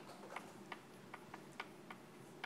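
Chalk clicking against a blackboard while letters are written: a string of faint, sharp, uneven clicks, about four a second.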